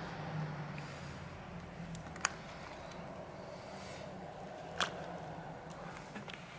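Quiet hand handling of a phone's replacement screen assembly: two light clicks, one about two seconds in and one near five seconds, over a steady low hum.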